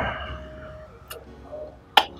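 A sharp lip-smack kiss near the end, over soft held notes of background music, with a small click about a second in.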